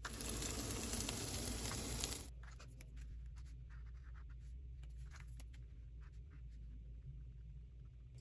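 A marker tip drawing on textured mixed-media paper over dried acrylic paint, with faint scratching strokes and small ticks. For the first two seconds a louder rush of noise sits over it.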